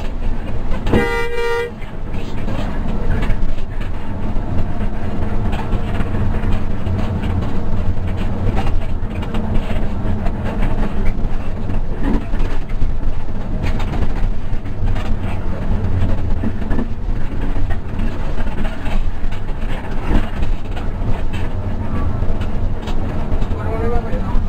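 Hino RK8 260 bus running at speed, heard from inside the front of the cabin as a steady engine and road rumble. A horn blast sounds about a second in, and a short faint toot comes near the end.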